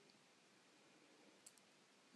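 Near silence, a pause in the narration, with one brief faint click about one and a half seconds in.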